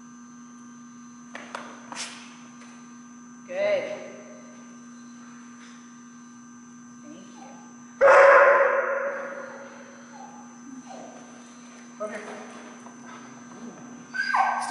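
A large dog barking a few times, the loudest bark about eight seconds in, trailing off in the room's echo, over a steady electrical hum.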